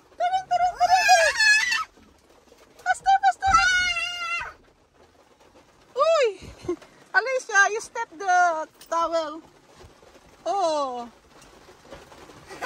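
A toddler's high-pitched, wavering squeals and cries in about five short bursts with pauses between them; the last one slides downward in pitch.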